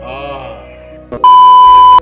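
A loud, steady, high-pitched test-tone beep, the tone that goes with a TV colour-bars 'no signal' screen, starting about a second in and cutting off abruptly. Quieter music plays before it.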